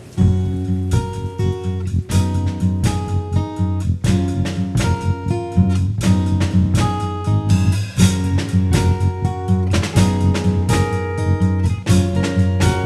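Instrumental music: acoustic guitar strummed and picked in a quick rhythm over a steady low bass line, coming in loudly at the start.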